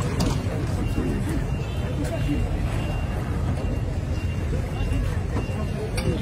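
Street noise: people's voices over a steady low rumble of motor traffic.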